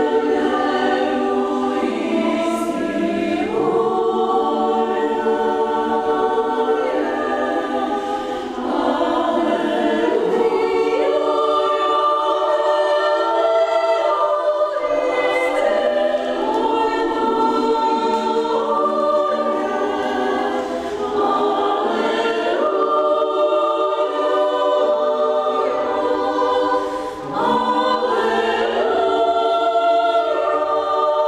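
Women's chamber choir singing a cappella in several parts, holding chords that move from one to the next, with short pauses between phrases about a quarter of the way in and again near the end.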